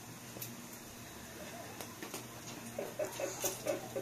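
A few faint clinks of a serving spoon on a ceramic plate as rice is served, over a steady low hum. Near the end comes a run of short, pitched squeaky calls, about four a second.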